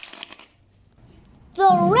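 A brief light clicking clatter of die-cast toy cars on a plastic track in the first half second, followed by a quiet stretch before a voice speaks near the end.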